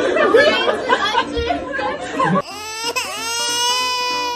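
A crowd laughing and chattering, then, after an abrupt cut about two and a half seconds in, an edited-in cartoon crying sound effect: a high, drawn-out wail that dips in pitch and then holds steady.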